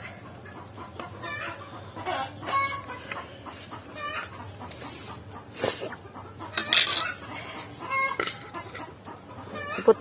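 Chickens clucking in the yard: short separate calls every second or two, with the loudest ones a little past the middle.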